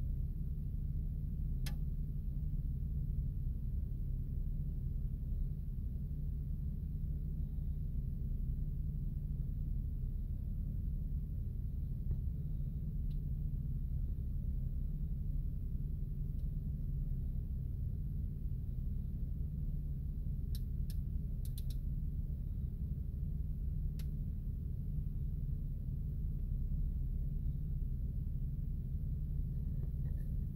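A steady low rumble or hum, with a few faint sharp clicks: one about two seconds in and a small cluster a little past the middle.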